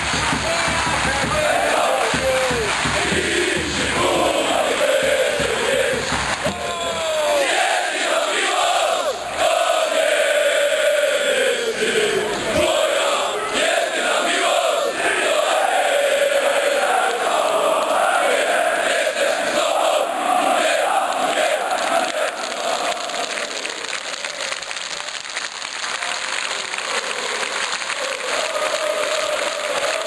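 Large crowd of football supporters chanting together in unison, loud and continuous, easing off a little in the last third.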